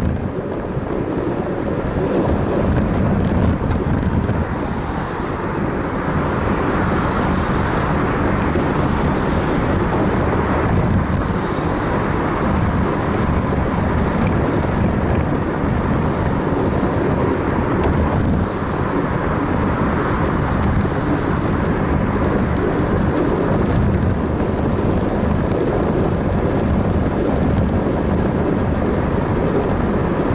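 Wind buffeting an action camera's microphone while riding along a path, a steady loud rumbling rush with road noise underneath.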